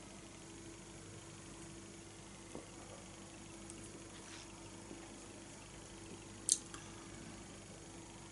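Quiet room tone with a steady low hum. A brief sharp click comes about six and a half seconds in.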